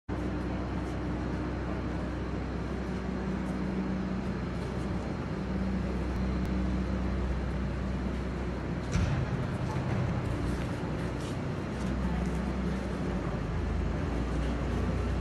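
City street ambience: a steady low rumble of traffic with a constant hum, and faint voices. The sound changes abruptly about nine seconds in.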